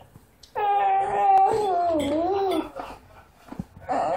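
A baby's long, high vocal squeal lasting about two seconds, wavering in pitch and falling near its end.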